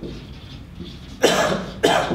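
A person coughing twice in quick succession, about half a second apart, in the second half.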